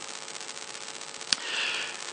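A man's audible intake of breath, lasting about half a second near the end, preceded by a single small click, over a steady low hiss of room tone.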